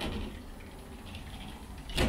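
Sliding glass balcony-glazing panel running along its rail, a steady, even rushing noise with no clear knock or latch.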